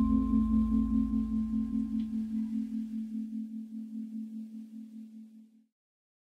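A single low, bell-like metallic tone, struck just before and left ringing, with a slow wobble of about four beats a second as it fades. It dies out about five and a half seconds in.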